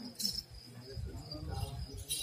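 Crickets trilling steadily in a high thin tone during a quiet lull, over a faint murmur of voices.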